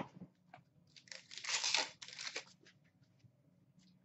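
Hockey trading cards being handled and slid against one another: a few light clicks, then a rustle about a second in that lasts about a second, and a shorter one after it.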